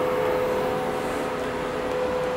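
CNC knee mill's Y-axis DC servo motor and leadscrew driving the table at a slow jog, a steady hum with a clear whining tone.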